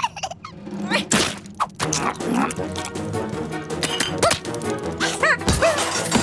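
Animated-cartoon chase scene: light background music with a couple of sharp comic whacks about a second in, and squeaky, rising-and-falling creature cries near the end.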